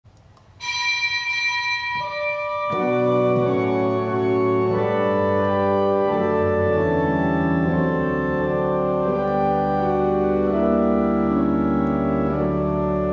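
Church organ playing slow sustained chords. A single high note enters about half a second in, more notes join near two seconds, and full chords over a deep bass come in just before three seconds.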